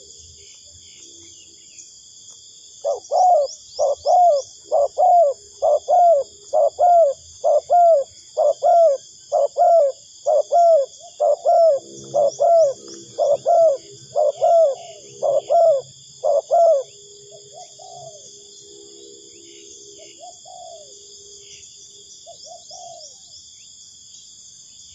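Spotted dove cooing in a fast, even run of short notes, about two a second, for some fourteen seconds, then a few fainter single coos. A steady high insect chorus runs underneath.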